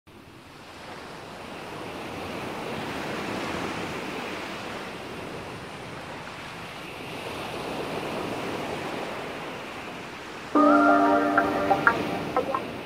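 Ocean surf washing in, an even rush that fades in and swells twice. About ten seconds in, music comes in suddenly with sustained chords, louder than the surf.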